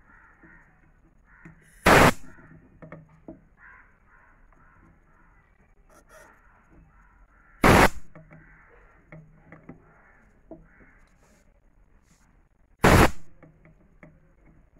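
A crow cawing: three loud, harsh single caws about five and a half seconds apart.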